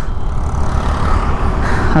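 Steady wind rush and road noise from a TVS Jupiter scooter under way, with wind buffeting the microphone low and heavy.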